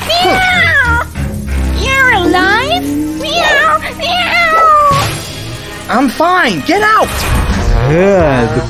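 Repeated meowing, about six calls, each gliding up and down in pitch, over background music.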